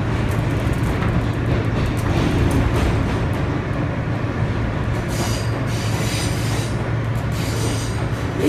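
Inside a New York City Subway car as the train runs: a steady low motor hum over rolling wheel rumble, with two stretches of high-pitched wheel noise about five seconds in and again near the end.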